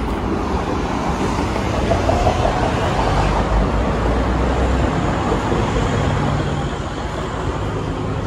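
Steady street traffic noise, cars passing on the road below, with a deeper rumble from about three to five seconds in.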